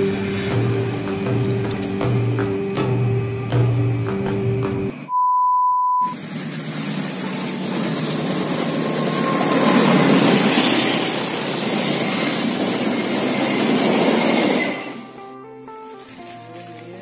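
Background music, then a single steady beep lasting about a second, then a train passing on the track: a swelling rush of noise, loudest about ten seconds in, that cuts off abruptly near the end as music returns.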